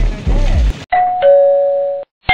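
Wind rumbling on the microphone over a hiss, which cuts off suddenly. Then a two-note falling 'ding-dong' doorbell chime, the sound effect of a subscribe-button animation: a high note, a click, and a lower note held.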